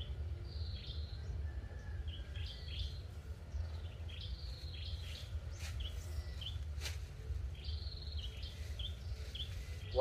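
Small birds chirping repeatedly, short high calls, some falling in pitch, over a steady low rumble. A single sharp click comes about seven seconds in.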